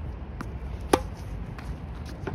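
Tennis racket striking the ball on a forehand: one sharp crack just under a second in, with a few fainter ticks around it.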